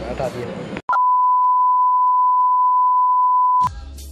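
A steady electronic beep at a single pitch of about 1 kHz, edited into the soundtrack in place of the other audio and lasting close to three seconds: a censor bleep.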